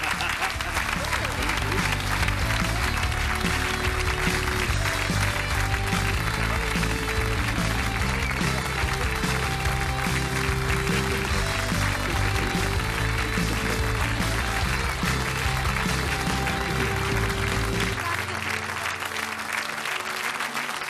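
Studio audience applauding over the show's closing theme music; the music's bass drops out near the end.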